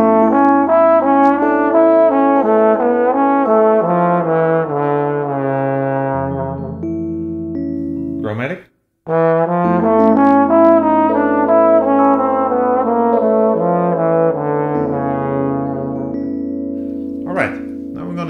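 Tenor trombone outlining an augmented major 7 chord (F major 7 plus 5): an arpeggio on the A triad, then a D melodic minor scale played down without the G, over a sustained backing chord and bass. The phrase is played twice, with a brief silence between the two about halfway through.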